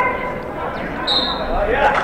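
The sound of a youth basketball game in a school gymnasium: players' and spectators' voices and shouts carry through the hall. A brief high squeak comes about a second in.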